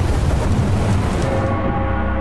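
Storm sound effect: a dense noisy rush with a deep rumble, like wind-driven rain and thunder, over a low sustained music drone. The noise fades about one and a half seconds in, leaving held music tones.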